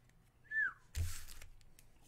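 Trading cards and foil booster-pack wrappers handled by hand: a short high squeak about half a second in, then a brief rustle about a second in, with a few faint ticks.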